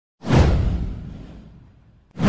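A whoosh sound effect with a deep rumble underneath, starting sharply just after the start, sweeping downward in pitch and fading away over about a second and a half.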